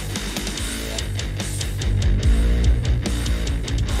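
A full rock mix with guitars playing back through a tilt equaliser, its tone shifting from boosted top end back toward flat as the tilt knob is turned.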